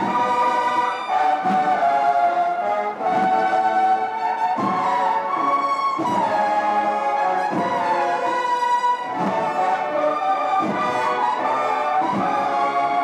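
Brass band playing a slow processional march, with held notes that change about every second or so.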